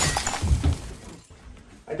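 Crash of shattering glass dying away, with a low thud about half a second in.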